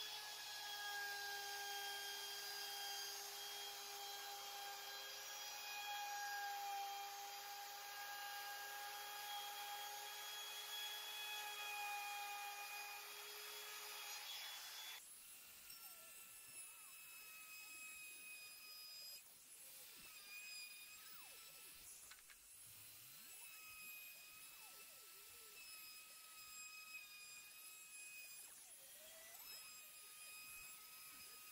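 Bosch Colt trim router running with a steady high whine as a small roundover bit rounds over the edges of a walnut piece. About halfway through, the sound cuts abruptly and the whine carries on quieter, at a different pitch.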